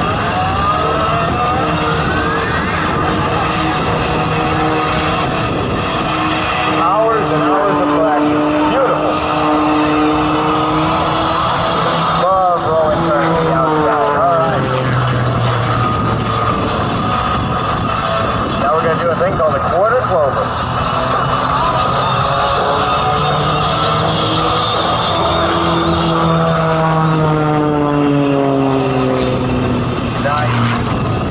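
Aerobatic monoplane's piston engine and propeller running at full power, its pitch rising and falling through rolling turns and a vertical climb, with a long falling glide near the end. Music from the public address plays along with it.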